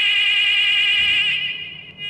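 Bus stop-request buzzer sounding: a loud, high, warbling electronic tone that holds and then fades away near the end.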